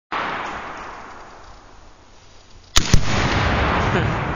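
A rifle shot and, a split second later, the louder boom of a Tannerite target detonating, followed by a long rolling rumble that slowly fades. A hiss that fades away comes before the shot.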